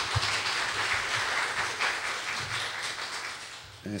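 Audience applauding in a lecture hall, a dense patter of clapping that dies away near the end.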